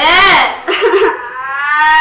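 A woman crying and wailing, her voice sweeping up and down, then breaking into one long drawn-out cry.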